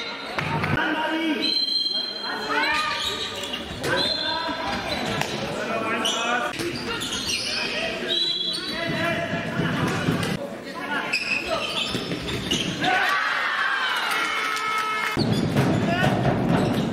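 Indoor handball game sounds: a handball bouncing on the hall floor among players' shouts and calls, echoing in a large sports hall.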